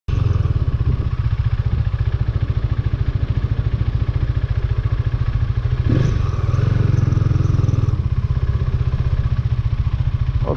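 A motorcycle engine running steadily at low road speed, heard from on board the bike as it is ridden in slow traffic, with a brief swell in the engine sound about six seconds in.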